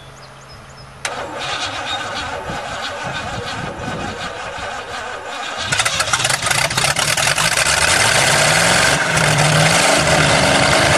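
A previously seized engine is cranked by its starter from about a second in. It catches near six seconds and runs, its pitch rising toward the end. It is running only on priming fuel, as it has no fuel system.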